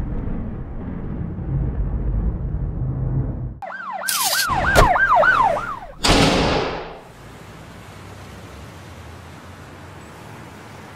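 A low rumble, then a police siren yelping in quick rising-and-falling sweeps for about two and a half seconds, cut by sharp clanks. About six seconds in comes a loud crash that dies away within a second, followed by a faint steady hiss.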